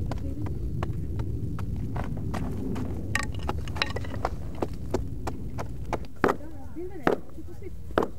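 Stone picks, hammers and antler tools striking and chipping at flint-bearing rock while a nodule is quarried out. Irregular sharp knocks and clicks, several a second, with two louder blows near the end, over a steady low rumble.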